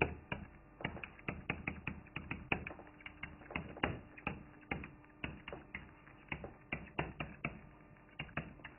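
Marker pen on a whiteboard as Chinese characters are written stroke by stroke: a quick, irregular run of short taps and ticks, several a second.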